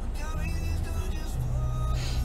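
Steady low rumble inside a car, with faint music from the car radio: held notes that change every half second or so.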